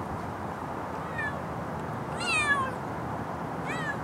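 Seal-point cat meowing three times, each call falling in pitch; the middle one is the longest and loudest.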